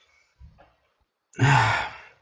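A man's loud sigh close to the microphone about one and a half seconds in. It is a short breathy exhale lasting about half a second.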